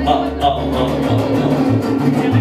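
Mariachi band playing live: a bass line in even, repeating notes under strummed guitars, with a man's voice on the microphone over the band.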